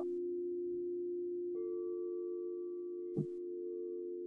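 Background music of sustained, ringing singing-bowl tones, with a new, higher bowl tone entering about a second and a half in. A brief tap sounds once, a little after three seconds.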